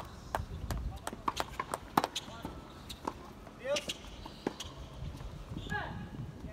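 Tennis balls bouncing and being struck on outdoor hard courts: a string of sharp, irregular knocks, with short voice calls about halfway through and near the end.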